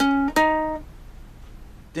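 Ukulele single notes picked on the C string: a D-flat right at the start, then a step up to an E-flat about a third of a second in, which rings for about half a second and dies away.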